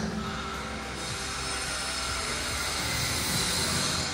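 Steady rushing outdoor noise coming in through an open window opening, growing slightly louder toward the end.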